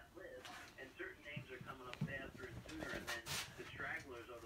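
Indistinct voices, a young child's chatter, with a short low thump about two seconds in and a brief hiss a little after three seconds.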